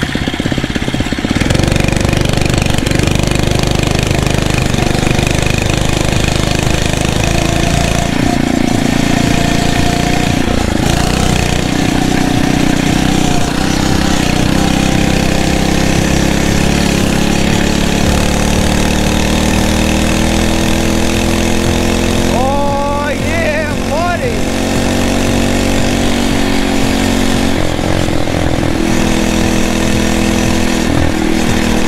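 Phatmoto Rover's 79cc four-stroke single-cylinder engine running steadily while the bike is ridden. Its pitch rises and eases as the throttle changes, climbing gradually late on. A short voice-like glide, rising then falling, sounds briefly over it about 23 seconds in.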